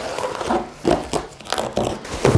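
Cardboard box being handled and pulled open by hand: an irregular run of short rustling and scraping noises.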